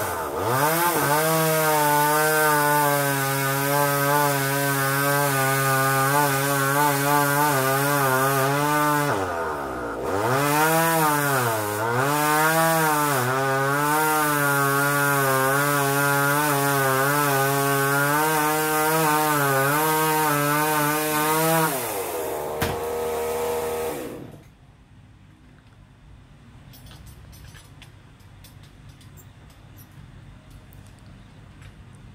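Chainsaw running at high revs, cutting into a tree. Its engine note dips and recovers twice about a third of the way in, drops lower near the end and then stops about 24 seconds in.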